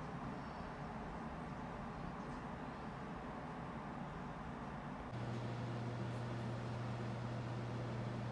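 Steady low background hiss, joined about five seconds in by a steady low hum.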